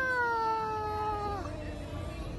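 A high-pitched human voice holding one long drawn-out vowel that slowly falls in pitch, then drops lower and fades out about a second and a half in.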